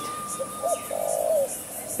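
A bird calling outdoors: a few short, low calls in the first second and a half, with a faint thin steady whistle over the first second.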